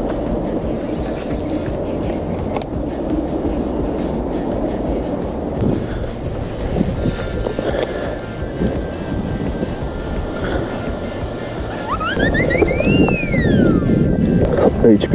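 Wind rumbling on the microphone under faint background music. Near the end comes an edited-in electronic sound effect: a quick stepped rising whistle that arches up and glides back down.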